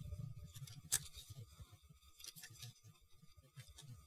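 Faint clicks and rubbing of hard plastic model-kit parts being handled, a plastic toy rifle being worked into a model's poseable hand, with one sharper click about a second in.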